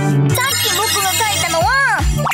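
A bright electronic jingle of sustained, ringing chime-like tones, ending near the close in a short sound that glides up in pitch and back down.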